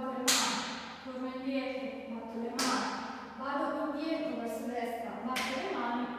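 Three sharp cracks about two and a half seconds apart, each ringing on briefly in the room, over a continuous voice.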